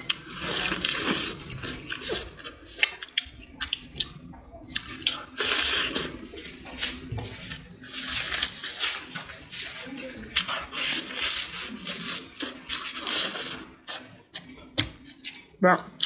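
Close-up eating sounds of braised chicken being bitten and chewed: wet chewing and sucking with many small clicks and smacks.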